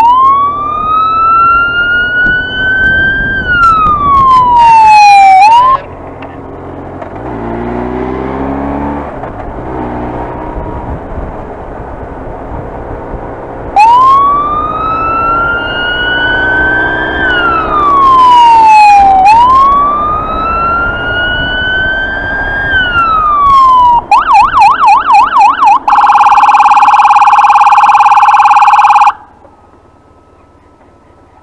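Police motorcycle siren: a slow wail that rises and falls, then two more wails after a stretch of engine and wind noise. Near the end it switches to a fast warble and then a steady horn blast about three seconds long that cuts off suddenly.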